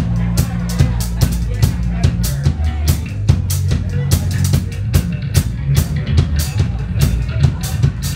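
Live rock band playing: a drum kit keeps a steady, driving beat of kick and snare over a low bass line.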